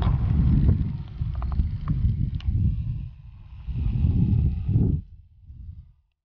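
Wind buffeting the microphone in uneven low rumbling gusts, dying away near the end.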